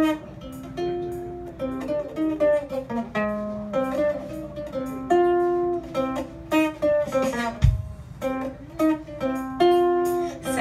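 Ukulele strumming the chords of an instrumental passage of a pub-rock song, with live drums keeping time. A single deep bass thump comes about three-quarters of the way through.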